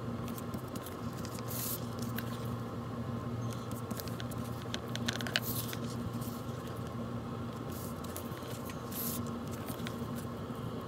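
Double-sided tape being pulled off its roll and pressed by hand along the edges of a chipboard cover: small crinkly, scratchy handling noises, with three short rasping pulls of tape.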